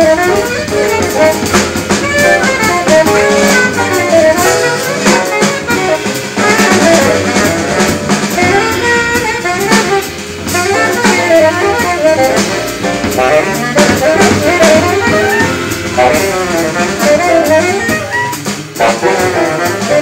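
Live jazz: a tenor saxophone solo of fast, winding runs over a rhythm section of piano, double bass and drums.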